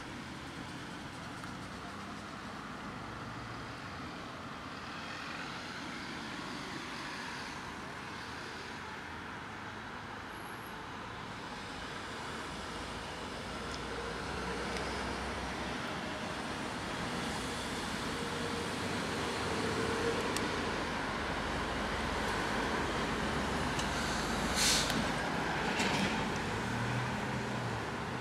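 Steady road traffic noise, growing louder through the second half, with a couple of sharp clicks near the end.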